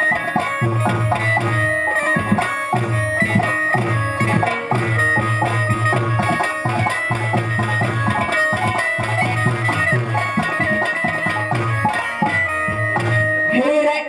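Instrumental interlude of a ragini accompaniment band: a plucked string melody over a steady, repeating drum rhythm. A voice begins to sing right at the end.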